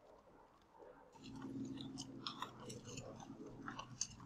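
Pen or stylus writing on a tablet screen: faint, irregular small clicks and scratches as numbers are written, over a low steady hum that starts about a second in.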